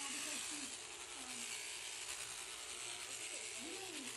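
Electric sheep-shearing handpiece running steadily as its comb and cutter move through the sheep's fleece, a continuous high, hissing buzz.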